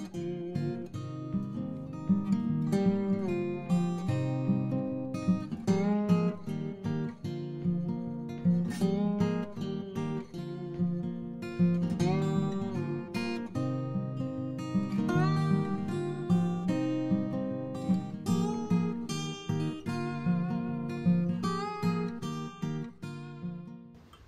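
Background music: acoustic guitar playing a steady run of plucked notes with some strumming.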